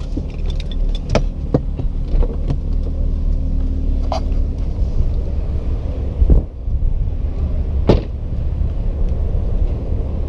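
Steady low rumble with scattered clicks and knocks of a car's cabin being handled, then a heavy thump about six seconds in as the car door is opened, and another sharp knock shortly after.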